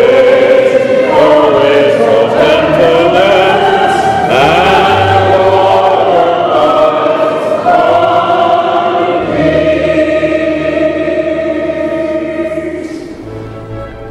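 A congregation singing a hymn together in long, held notes over a low accompaniment, fading away near the end.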